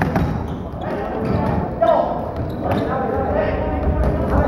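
Indoor floorball play in a large, echoing sports hall: players' shouts and calls over running footsteps on the wooden court, with a few sharp clacks of sticks and ball near the start.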